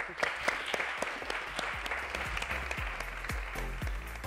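Audience applauding: many hands clapping in a dense, steady patter. Music plays under the clapping, its low notes coming through near the end.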